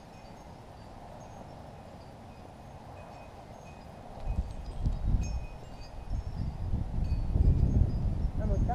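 Faint, short high chiming tones over a low outdoor background, then heavy, uneven low rumbling on the microphone from about four seconds in, while a person walks close past the camera.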